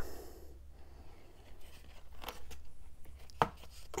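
Faint handling noise of a clear plastic embossing folder and a sheet of cardstock being picked up and moved, with two light clicks, the second and sharper one about three and a half seconds in.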